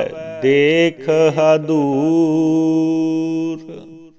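A single voice chanting the closing words of a Gurbani shabad in slow melodic recitation. Its pitch bends over the first syllables, then holds one long note from about two seconds in. The note fades out just before the end, closing the shabad.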